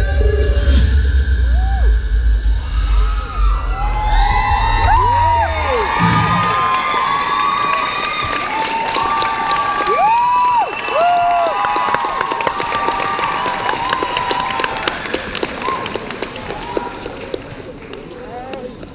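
An audience cheering with many high shouts over a dance track that cuts off about six seconds in, then clapping and cheering that slowly fade.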